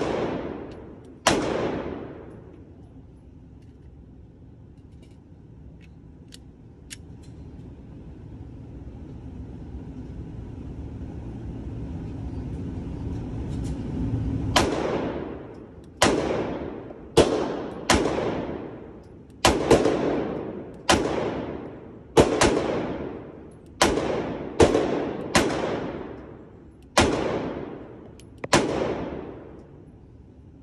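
Glock 43x 9mm pistol firing at an indoor range: two shots at the start, then after a pause of about twelve seconds a string of about a dozen shots at uneven intervals of roughly a second. Each shot is sharp and leaves a short echoing tail.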